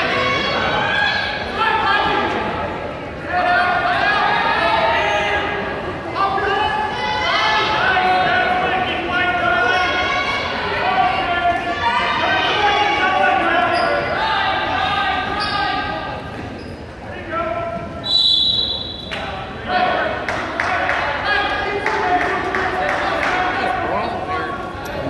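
Spectators and coaches shouting and cheering during a wrestling bout, several voices nearly continuous and echoing in a large gym, with a few knocks mixed in.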